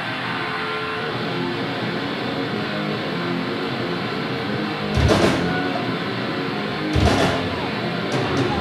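Live rock band with electric guitars starting a song, coming in loud and sustained all at once, with two louder hits about five and seven seconds in.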